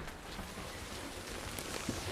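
Soft, steady rustling hiss as an RV bed platform is lifted, its quilted bedspread shifting on the mattress.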